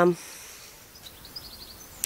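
A drawn-out spoken "um" trails off at the start, then faint outdoor background noise with a few faint bird chirps about a second and a half in.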